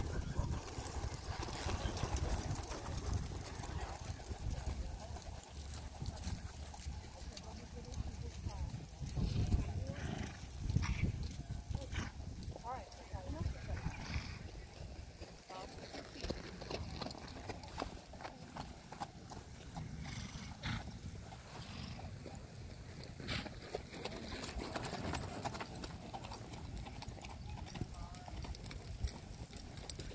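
Hoofbeats of horses walking on a dirt arena, with indistinct voices of people talking in the background.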